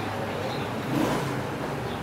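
Steady hum of street traffic coming in through an open shopfront doorway, with a faint brief voice about halfway through.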